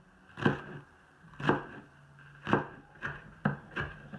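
Knife chopping wild leeks (ramps), single chops about a second apart, coming quicker near the end.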